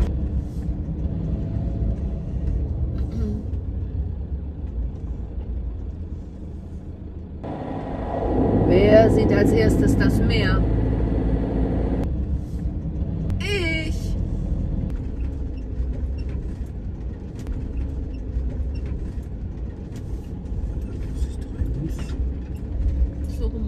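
Camper van driving, heard from inside the cab: a steady low engine and road rumble. It gets louder and noisier for a few seconds about a third of the way in.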